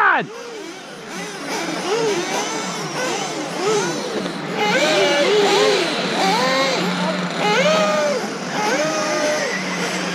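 Several electric RC off-road buggies racing on a dirt track, their motors whining up and down in pitch in overlapping arcs as they speed up and slow down through the corners.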